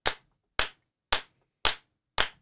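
Slow hand clapping by one person: four separate claps about half a second apart, sounding like a lone person applauding.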